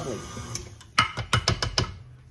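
KitchenAid stand mixer running, its beater working thick pound cake batter, with a low steady motor hum. From about half a second in, a quick irregular run of sharp clicks and knocks lasts over a second.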